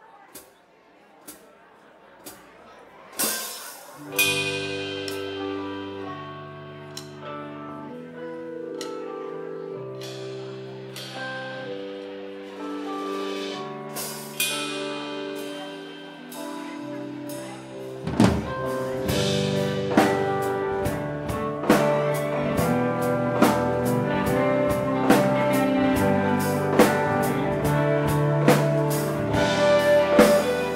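Live rock band opening a slow song. A few clicks about a second apart lead into a loud hit, then sustained chords change slowly under occasional cymbal crashes. About 18 seconds in, the full band comes in, with the drum kit playing a steady beat under electric guitars.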